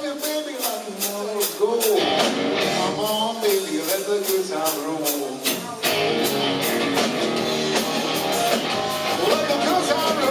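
Live rock band playing: electric guitar lines with bending notes over a steady drum beat and bass guitar.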